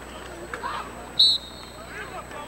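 A referee's whistle blown once about a second in: a short, sharp, shrill blast that trails off into a fainter tone. It signals the play dead after the tackle. Faint voices from the sideline can be heard beneath it.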